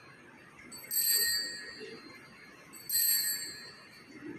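Small altar bell struck twice, about two seconds apart, each a high, clear ring that fades over about a second: the bell rung at the elevation of the chalice during the consecration at Mass.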